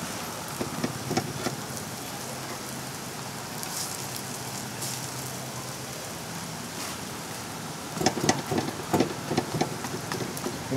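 Burger patties and buns sizzling on a flat-top griddle, a steady hiss. A metal spatula and press click against the griddle a few times in the first second or so, then knock and scrape on it more busily over the last two seconds as patties are turned.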